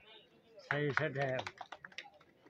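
A brief burst of a man's voice, then a quick run of light, sharp clicks, about half a dozen in half a second.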